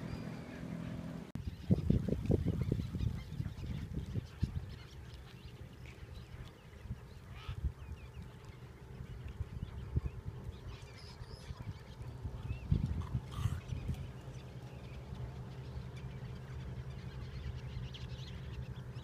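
A flock of gulls calling, with short scattered calls, over a steady low hum. Wind buffets the microphone in two loud rumbling bursts, one about two seconds in and one about thirteen seconds in.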